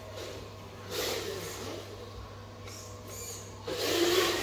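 Small electric drive motor and gears of a homemade remote-control truck running as it drives and turns on a tile floor, with a steady low hum beneath.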